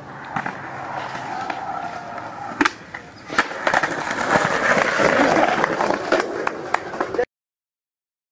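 Skateboard wheels rolling on concrete, with a few sharp clacks of the board striking the ground. The sound cuts off suddenly near the end.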